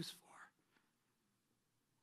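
A man's voice finishing a word in the first half second, then near silence.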